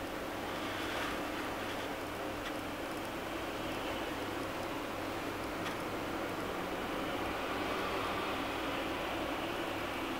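Steady room hum and hiss, as of a ventilation fan. A faint swish of a calligraphy brush dragging across paper comes about a second in.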